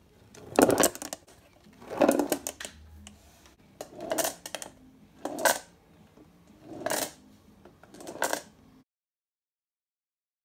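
Paint-coated marbles rolling and clattering inside a cardboard shoebox as it is tipped side to side. There are about six bursts of quick clicks, one every second and a half or so.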